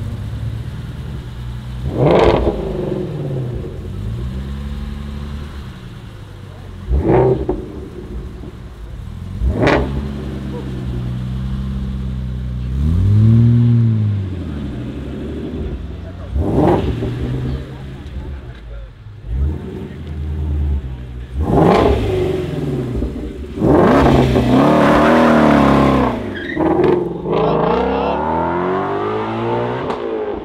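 Several cars pulling away one after another, engines revved in short sharp blips every few seconds, with a rising-and-falling rev near the middle and a longer loud acceleration late on.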